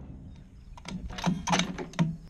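Bolt-action rifle's bolt being worked between shots: a quick run of metallic clicks and clacks starting just under a second in.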